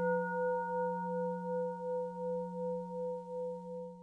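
A Buddhist bowl bell (qing) ringing out after a single strike, several steady tones dying slowly away with a wavering pulse about twice a second, and fading near the end.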